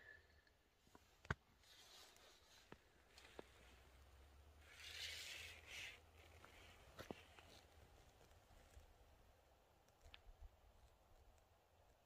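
Near silence, with a few faint clicks of handling and a brief soft rustle about five seconds in.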